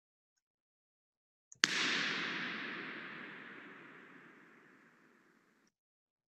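Recorded impulse response of a cathedral with granite walls: a sharp bang like a gunshot about a second and a half in, followed by a long hissing reverberation tail that fades away steadily over about four seconds.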